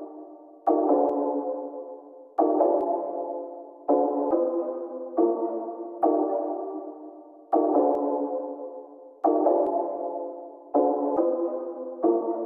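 Instrumental song intro: a synthesizer chord struck about eight times, roughly every one to one and a half seconds, each chord fading away before the next.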